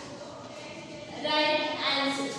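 A woman's voice holding a word in a long, level, sing-song tone, starting a little past a second in, after a quiet stretch of room tone.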